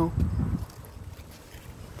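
Low rumble of wind on the microphone for about half a second, then a quiet outdoor background.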